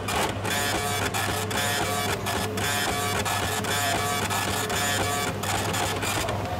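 Kitchen order ticket printer printing, a steady mechanical clatter of rapid, even ticks line after line, with a low hum underneath.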